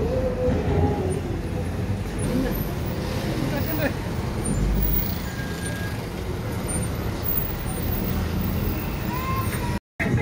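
A car's engine and road noise, heard from inside the cabin while moving slowly through a crowd, with the voices of many people on foot outside. The sound drops out for a moment just before the end.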